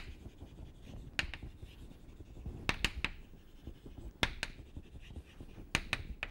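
Chalk writing on a blackboard: short sharp clicks and taps of the chalk striking the board, coming in small clusters every second or so.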